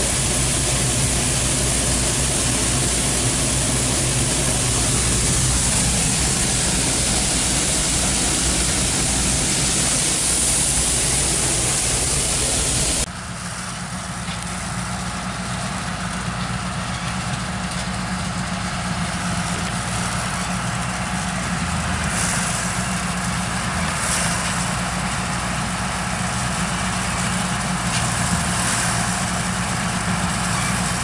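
John Deere 4400 combine running while harvesting soybeans, first heard up close on board as a loud, dense machinery noise. About 13 seconds in the sound changes suddenly to the combine heard out in the field, quieter, with a steady engine hum.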